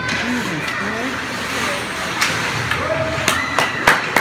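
Spectators' voices and shouts echoing in an ice rink during play, with several sharp knocks of sticks and puck in the second half.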